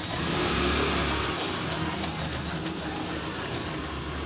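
A motor vehicle passing close by, its low engine noise swelling and fading within the first second and a half, followed by a few short rising bird chirps.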